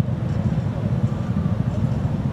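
Steady low rumble of unpitched background noise, with no clear pitch or rhythm.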